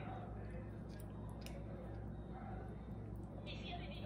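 Light clicks and scrapes of a metal fork against a small jar of pickled jalapeño slices and a plate, over a steady low hum.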